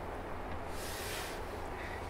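Quiet room tone: a steady low hum, with a brief soft hiss near the middle.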